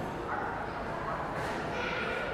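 Faint, distant voices over the steady background noise of a large indoor hall.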